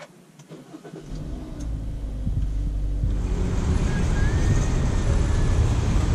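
A Kia car's engine started with its push button: it catches about a second in and keeps running, the sound growing steadily louder over the following seconds.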